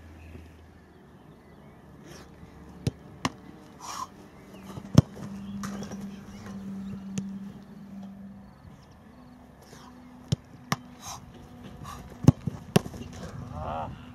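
Sharp thuds of a football being kicked and stopped, about eight in all, coming in pairs and small clusters, the loudest about five seconds in and again about twelve seconds in.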